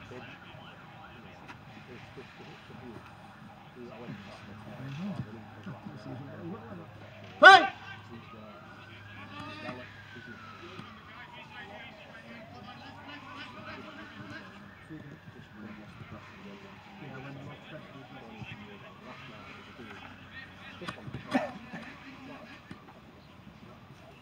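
A faint emergency-vehicle siren wailing slowly up and down, about one rise and fall every five seconds. Over it come scattered distant voices, a single loud shout about seven and a half seconds in and a shorter call near the end.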